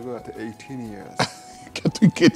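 Low, untranscribed speech among studio panellists, with a short sharp burst about a second in.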